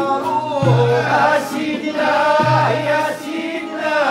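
Moroccan malhoun song: male voices singing a melody together over oud, a violin bowed upright on the knee and other plucked and bowed strings. A low note sounds roughly every two seconds under the singing.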